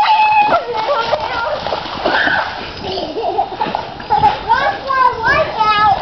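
A small child's feet splashing through a shallow muddy rain puddle, with young children's high-pitched shouts and squeals throughout.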